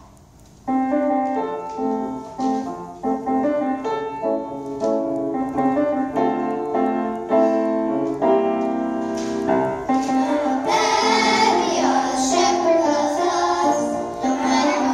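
A piano plays an introduction of struck chords for about ten seconds, then a children's choir starts singing over it.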